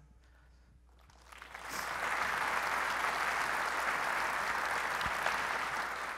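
Audience applause, starting quietly about a second and a half in, quickly building and then holding steady.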